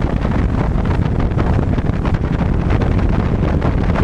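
Heavy wind buffeting the microphone over a boat's outboard motor running at speed, loud and steady throughout.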